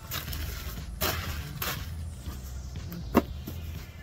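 Tissue paper rustling and crinkling in short bursts as it is handled and pulled out of a shoe box, with one sharp tap about three seconds in.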